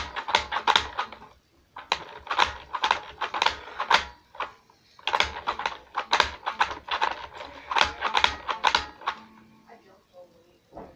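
Toy spin art machine spinning, its plastic mechanism rattling with a loud, dense clicking in three bursts, with short pauses between.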